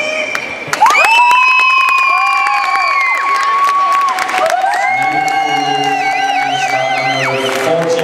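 Recorded music for a stage dance routine: long held, gliding tones that come in loudly about a second in, with a warbling tone near the end.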